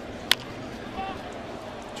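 A single sharp crack of a wooden baseball bat meeting a pitch, sending a fly ball to right field, over the low steady murmur of a stadium crowd.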